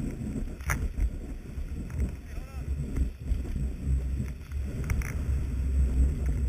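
Skis sliding through fresh snow, heard through a knee-mounted GoPro in its housing: a steady low rumble and rough hiss of the skis on the snow, with sharp knocks from the camera mount, one about a second in and another near the end.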